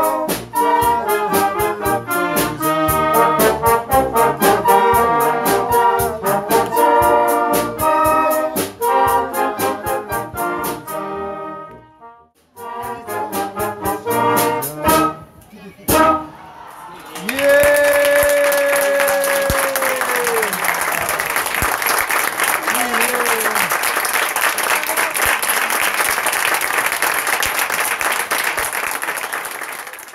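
Youth concert band of brass and woodwinds playing, the music breaking off after about eleven seconds with a few closing notes to follow. From a little past the middle to the end, an audience applauds steadily, with a voice calling out early in the applause.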